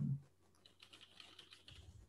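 Faint computer keyboard typing: a run of irregular, quiet key clicks.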